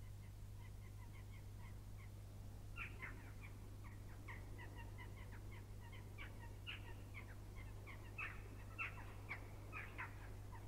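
Faint birds chirping in a series of short, irregular calls, sparse at first and busier from about three seconds in, over a steady low hum.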